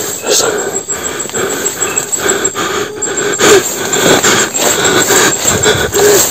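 Leaves and undergrowth rustling and crackling as someone pushes through brush on foot, under a faint steady hum.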